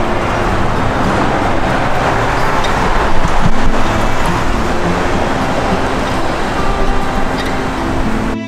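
Street traffic noise mixed with wind rumbling on the microphone, loud and steady, with faint music underneath.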